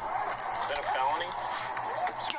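Muffled, indistinct voices on a police body camera's microphone, over a constant rustling haze and a steady high-pitched whine.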